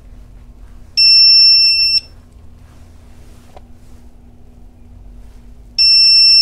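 Begode EX30 electric unicycle's electronic beeper sounding two steady one-second beeps, the second about five seconds after the first.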